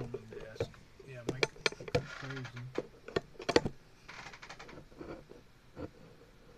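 Handling noise: a run of sharp clicks and knocks as things are moved about and set down on a desk, with a short rustle about four seconds in.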